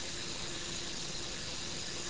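Steady even hiss with a faint low hum underneath.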